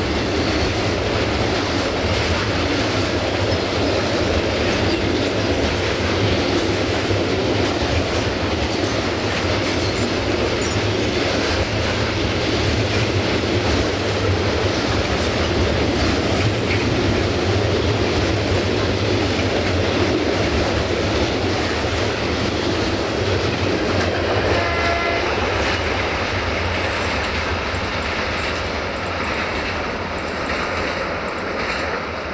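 Freight train wagons rolling past close by: a steady, loud rumble and rattle of wheels on the rails. A short pitched tone sounds about 25 seconds in, and the noise eases slightly near the end as the train draws away.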